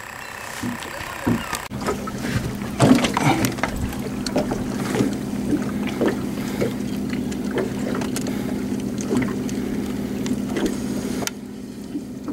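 A boat engine running with a steady low hum, with scattered clicks and knocks from gear being handled aboard. The hum starts suddenly about two seconds in and drops away shortly before the end.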